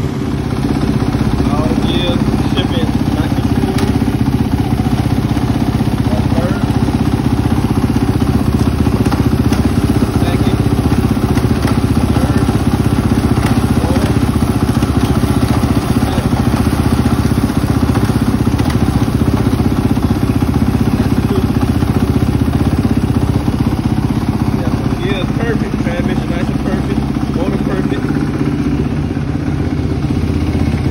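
2013 Suzuki RM-Z450's single-cylinder four-stroke engine idling steadily on the stand after a bottom-end rebuild, new transmission and valve adjustment: a nice idle.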